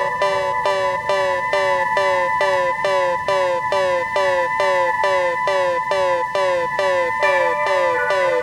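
Electronic music from a DJ mix: a synth figure of short downward pitch sweeps repeating evenly about twice a second, siren-like, over steady held high tones.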